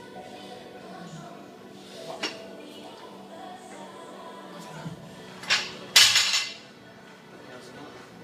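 A 60 kg barbell dropped from overhead after a snatch and landing on the gym floor: two heavy clanking impacts about half a second apart, around five and a half seconds in, the second the loudest, followed by a brief rattle of the plates. A lighter clank of the bar about two seconds in.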